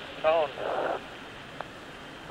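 Mission control radio voice loop: a short clipped word about a quarter second in, followed by a brief burst of radio static and then a low steady hiss on the line.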